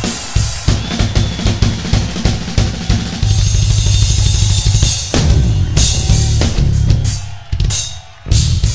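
Tama rock drum kit played hard in rapid fills of bass drum, snare and cymbals. A few seconds in there is a sustained roll under a cymbal wash, and the playing drops away briefly just before the end.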